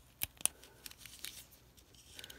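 Zippo lighter being handled as its insert is fitted back into the metal case: two sharp clicks in the first half-second, then faint scattered ticks and rustle.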